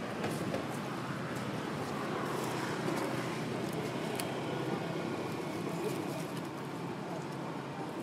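Steady outdoor background noise with a few faint clicks.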